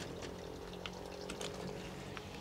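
Small electric clip-on desk fan running, a faint steady hum, with a few light handling clicks.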